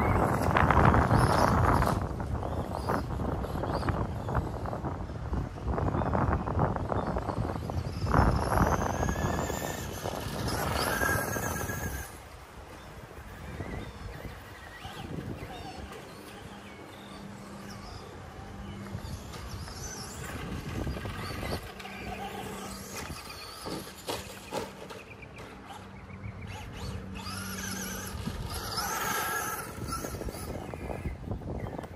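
Traxxas Slash RC short-course truck driving on a dirt track, its electric motor whining up and down in pitch as it speeds up and slows. Heavy wind on the microphone covers it for about the first twelve seconds.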